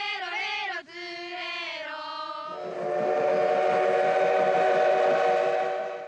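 Voices singing held, wavering notes. About two and a half seconds in, a louder steady chord of several notes with a hiss beneath it takes over and holds until near the end.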